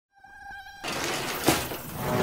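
Logo-intro sound effect: a buzzing tone for about half a second, then a rush of harsh, static-like noise with a sharp hit about one and a half seconds in.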